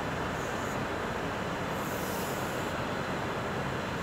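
Chalk drawing lines on a blackboard, with two short scraping strokes about half a second in and around two seconds in, over a steady background noise.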